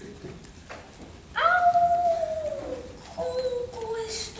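A child's high voice holding one long note, starting about a second and a half in, that slides slowly down in pitch and then levels off.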